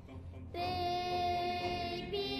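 Soft instrumental music, then about half a second in a high singing voice comes in and holds one long steady note.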